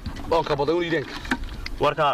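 Speech only: a person talking, with no other distinct sound.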